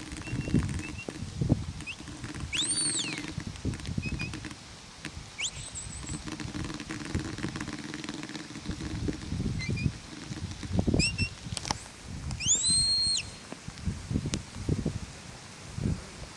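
Shepherd's whistle commands to a working sheepdog: several short high chirps and three longer whistles, one rising and falling, one a rising sweep, and one near the end rising and then held. Low wind rumbles on the microphone run underneath.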